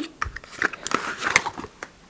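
A cardboard product box and a gold spray bottle being handled: irregular small clicks, taps and rustles.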